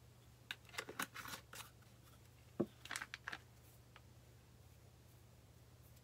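Light tabletop handling of a small container of foil flakes and the flakes themselves: two short runs of crinkly rustles and clicks, about half a second in and again around three seconds in, with a single knock at the start of the second run.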